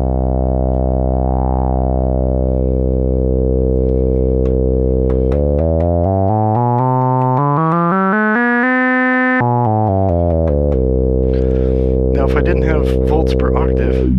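A low, buzzy analog synth drone played through a resonant XaVCF filter, an OB-Xa filter clone built on an AS3320 chip. About a second in, a resonant peak swells up and falls back. Midway, the tone shifts for several seconds as its overtones glide up and back down, then the steady drone returns.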